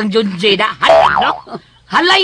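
Voices of radio drama actors: a voice talking or exclaiming with a strongly rising and falling pitch, a brief lull, then voice again near the end.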